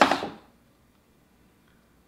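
Near silence: room tone, after a brief hiss in the first half second that ends a spoken word.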